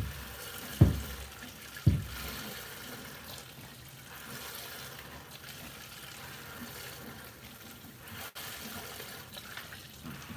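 Hand-milking a Jersey cow: streams of milk squirting into a plastic five-gallon bucket, with two dull thumps in the first two seconds.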